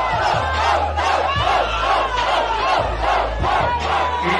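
Large crowd shouting and cheering loudly together in reaction to a rap-battle punchline, many voices yelling at once over the deep bass of a hip-hop beat.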